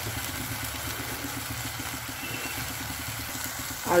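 Onion-tomato masala frying in oil in a kadai, with a steady sizzle over a low, even rumble.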